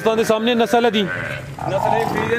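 A calf bleating: a drawn-out call that drops in pitch about a second in, heard over men talking.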